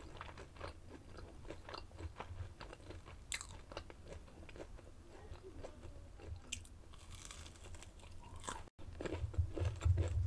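Close-miked chewing of crispy fried food, with many small irregular crunches and wet mouth sounds. A brief cut-out just before the end, then the chewing is louder.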